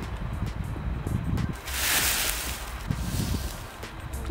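A firework rocket's burst charge is ignited in the open and burns off in one quick rushing whoosh about one and a half seconds in. The sound fades away over the next second or so.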